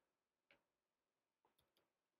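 Near silence, with a few very faint computer keyboard clicks.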